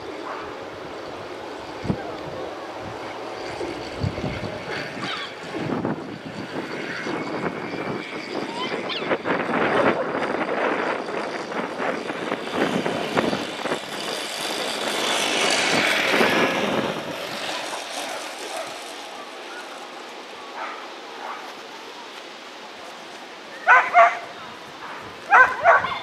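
Outdoor track noise with a rushing swell in the middle as a sighthound and the lure go past close by. Near the end, a dog barks loudly in two short bursts, about a second and a half apart.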